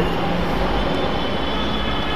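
Steady background noise, an even low hum and hiss with no distinct events, in a pause between speech.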